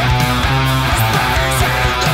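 Solar electric guitar playing a heavy death metal riff, low notes changing every fraction of a second.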